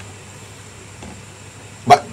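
A pause in a man's talk: faint steady room tone of hiss with a low hum, then his voice resumes near the end.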